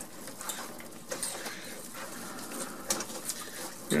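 Wire whisk stirring a thick melted chocolate and butter mixture in a stainless steel pot: a soft wet scraping, with a few light clicks of the whisk against the pan.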